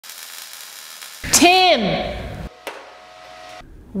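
A MIG welding arc sizzling in a steady hiss for about a second. Then a voice calls out loudly with a long falling pitch. After a click, a steady hum runs until shortly before the end.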